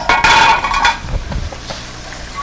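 Metal pots and pans clanking, with a short ringing clatter for just under a second, then a couple of low knocks.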